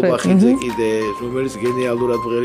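A man singing with musical accompaniment, with a steady high note held through most of it.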